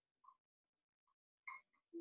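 Near silence, broken by a few faint, short blips.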